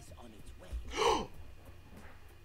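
A man's sharp gasp of surprise with voice in it, about a second in, rising and then falling in pitch.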